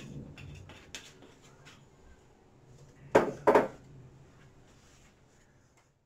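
Two sharp knocks of kitchenware set down on a hard kitchen counter, about a third of a second apart, a little over three seconds in, after a lighter knock about a second in.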